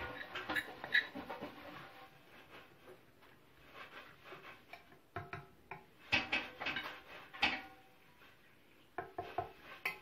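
Metal spoon stirring and scraping candied fruit in a stainless-steel saucepan: irregular clinks and scrapes against the pan, some with a short metallic ring. They come in clusters near the start, from about five to seven and a half seconds in, and again near the end.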